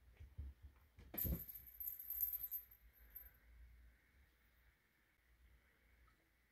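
A knock about a second in, followed by light metallic jingling and rattling for about two seconds, as something small and metal is set moving by the kitten.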